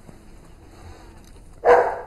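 A dog barking once, a single short bark near the end of an otherwise quiet stretch of room tone.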